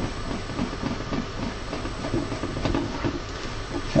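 Hands fitting the plastic top cover back onto a Creality Halot R6 resin printer and doing up its side clips: low rubbing and handling of plastic with a few faint clicks, over a steady background hiss.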